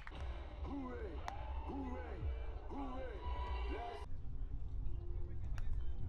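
People's voices calling out in drawn-out, rising-and-falling shouts over a low rumble, cut off sharply about four seconds in, then quieter background.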